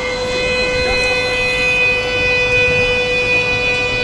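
A sustained drone of several steady tones held together like one long chord, swelling slightly in the middle with no change in pitch.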